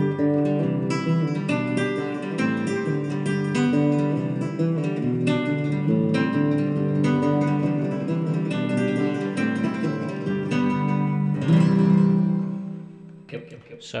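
A recorded acoustic guitar track plays back with plucked notes and chords, run through a ping-pong delay that repeats the echo between the left and right channels. A last chord rings out and fades near the end.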